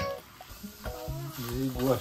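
Hamburger patties frying on a hot griddle, a steady sizzle, with a voice over it in the second half.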